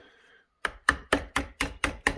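A hammer tapping a screwdriver that is used as a chisel, about six sharp strikes at roughly four a second starting just over half a second in. It is chipping hardened pine pitch off a chainsaw's engine.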